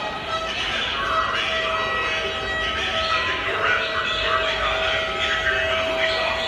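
Crowd of marching protesters talking, chanting and shouting together, with a steady held tone sounding over the crowd noise.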